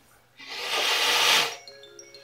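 A person blowing hard on a small DC motor's plastic propeller: a breathy rush of air lasting about a second. Near the end, chiming mallet-percussion music begins.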